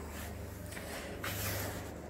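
Faint steady low hum with light rustling that swells a little about halfway through, as a phone is moved around by hand.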